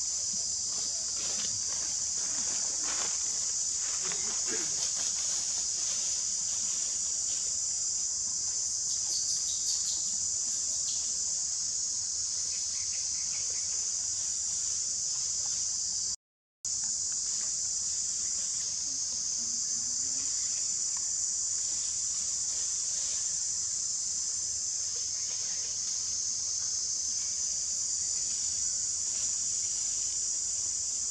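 Steady, high-pitched drone of insects in the forest canopy, holding one level throughout and dropping out for a moment about 16 seconds in.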